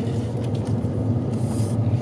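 A car driving, heard from inside the cabin: a steady low rumble of engine and road noise, with a brief hiss about a second and a half in.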